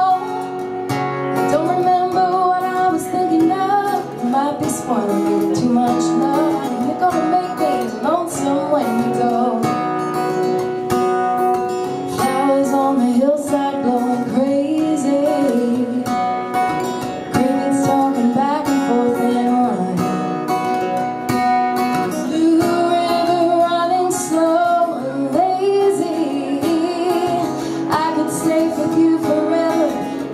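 A woman singing while strumming an acoustic guitar: a solo live performance of a song, the voice carrying the melody over steady strummed chords.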